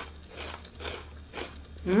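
A person chewing a crisp Lay's potato chip: three crunches about half a second apart, close to the microphone.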